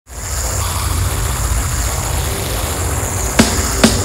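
Live stage noise from amplified gear: a steady low rumble and hiss with a thin high tone, then two sharp drum hits about half a second apart near the end as the drum kit comes in.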